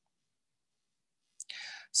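Near silence, then near the end a lip click and a short, soft intake of breath just before the word "So".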